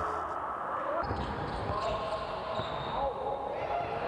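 Game sound from a basketball court: a basketball bouncing on the floor, with players' voices and calls in the hall.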